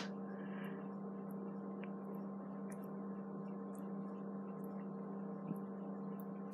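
Steady low hum with a few faint steady tones above it, and a small click near the end.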